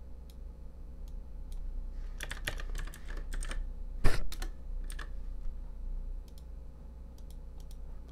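Computer keyboard typing as a number is entered: a few faint keystrokes early on, a quick run of keystrokes about two to three and a half seconds in, one louder key strike about four seconds in, then sparser faint clicks.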